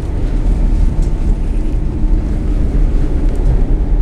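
Steady low rumble of a limited express train running at speed, heard from inside the passenger car, with a faint steady hum over it.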